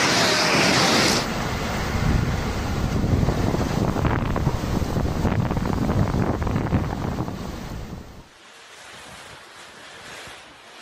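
Severe storm wind gusting hard against the microphone, with driving rain: a loud, fluctuating rush that is heaviest in the low end. It starts as a brighter hiss for about the first second, and drops to a much quieter hiss about eight seconds in.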